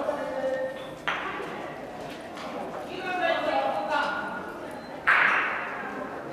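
Two sharp clacks of a gateball stick striking the hard ball, about a second in and again near the end, the second louder. Each rings briefly in the big covered hall.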